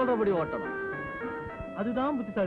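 Film soundtrack song: a voice singing a devotional melody over instrumental accompaniment. The singing breaks about half a second in for a short phrase of held instrumental notes, then comes back near the end.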